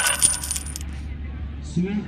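A brief jingling rattle, a quick run of light clicks with a high ringing note, lasting just under a second. A man's voice starts near the end.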